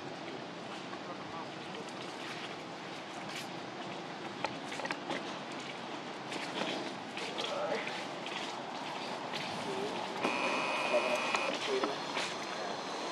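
Outdoor background noise with scattered rustles and clicks and indistinct voices in the distance. From about ten seconds in, a steady high tone is heard for a second or so.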